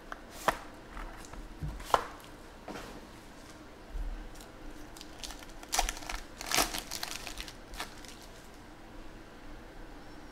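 Plastic shrink-wrap crinkling as it is peeled off a trading-card box, then a foil card pack torn open. The sound is a scattering of short, sharp crackles and rips.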